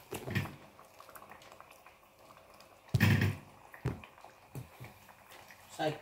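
Quiet kitchen handling noises: a short knock about three seconds in and a lighter one a second later, over faint crackling.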